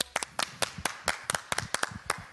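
Hand clapping: a short run of distinct, separate claps, about seven a second, as a song ends.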